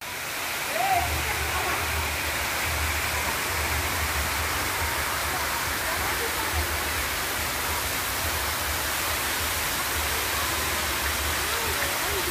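Steady rush of running water in a water-park pool, with an uneven low rumble of wind on the microphone and faint distant voices.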